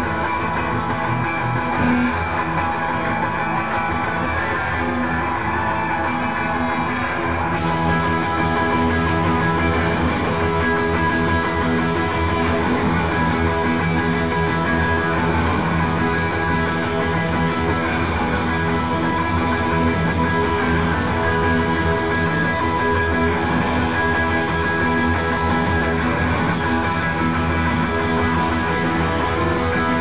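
Live rock band playing with electric guitars and a drum kit, a dense, steady wall of sound that gets a little louder and fuller about eight seconds in.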